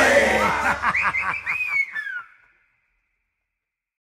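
The last notes of an Oi! punk song die away under a few short bursts of laughter. The recording then stops dead a little over two seconds in.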